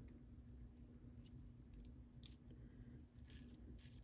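Near silence with a faint steady hum and a scattering of faint, short clicks from a small plastic toy tandem bike being handled and its parts turned.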